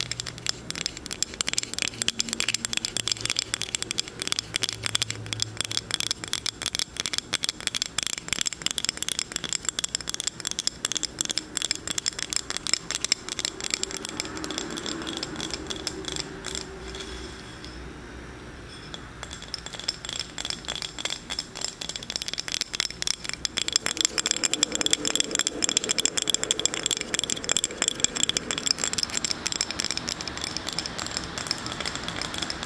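Rapid fingernail tapping on a glass sea turtle coaster, held close to the microphone. The taps run in a quick, continuous patter, ease off briefly about two-thirds of the way through, then pick up again a little louder.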